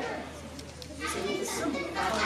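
Indistinct voices talking in the background, louder from about a second in, over a steady low hum.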